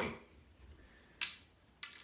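Two short, sharp clicks, about a second and then a second and a half in, from handling gear on a craps table: the point puck being set on the 10 and the stick going out for the dice.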